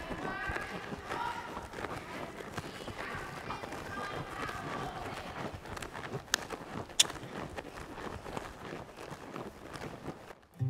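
A horse's hoofbeats on sand footing as it trots and canters around an indoor arena, with faint voices in the first half. Two sharp clicks come a little past the middle, the second the loudest sound.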